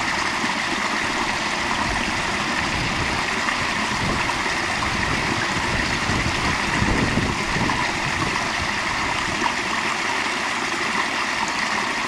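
Small stream of water spilling over rocks into a shallow pool, a steady, even splashing rush that holds at one level throughout.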